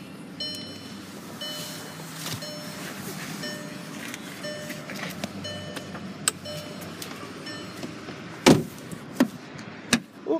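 A 2010 VW CC's warning chime sounding about once a second over a steady low hum, with the driver's door standing open. A loud knock comes near the end, with a few smaller clicks.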